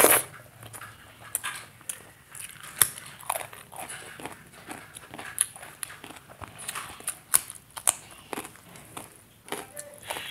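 Close-miked eating sounds: a loud, wet mouthful of rice and curry taken by hand at the start, then chewing with frequent short lip smacks and mouth clicks.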